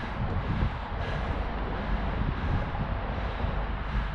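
Wind buffeting the camera microphone: a steady rushing noise with uneven low rumbling gusts.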